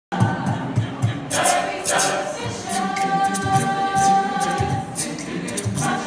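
Mixed high school vocal jazz choir singing into microphones, with a long held chord about halfway through that lasts some two seconds.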